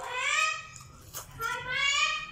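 Two drawn-out animal cries, each a little under a second long, the second beginning about halfway through.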